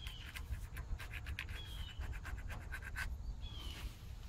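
Metal gasket scraper scratching in short, irregular strokes on the water pump mounting face of a 1967 Ford F100's cast-iron 240 inline-six block, cleaning off old gasket residue.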